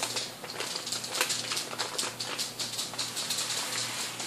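Padded paper mailing envelope handled and turned over in the hands, giving an irregular crinkling and rustling.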